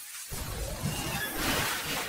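Intro sound effect: a noisy, crashing, shatter-like burst over music that grows louder toward the end.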